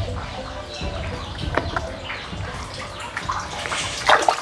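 Water splashing and sloshing in a concrete wash basin, with scattered small clicks and clatters that grow busier near the end.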